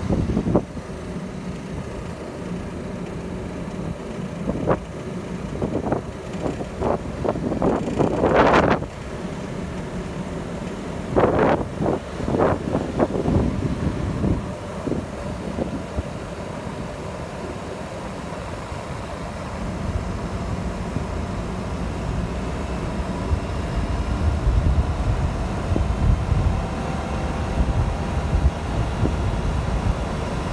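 Car driving slowly, heard from inside the cabin: a steady low rumble of engine and road noise, with a run of short knocks and rattles between about four and fourteen seconds in. The rumble grows stronger in the second half.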